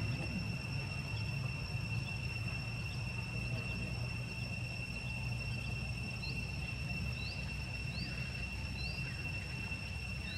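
Insects droning steadily in two high, unbroken tones over a low rumble. From about six seconds in, short rising chirps come roughly once a second.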